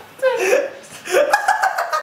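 A young man laughing hard in two bursts. The second starts about a second in and goes on in quick, choppy pulses.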